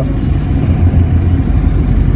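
Engine and road rumble heard from inside a moving bus: a steady, deep drone that swells a little about a second in.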